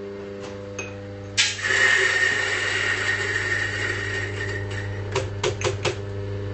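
Mahlkönig EK43 flat-burr coffee grinder's motor running with a steady hum; about a second and a half in, a dose of coffee beans is ground, a loud grinding noise with a steady high tone in it that lasts about three seconds before dropping back to the motor's hum. Several sharp taps follow near the end.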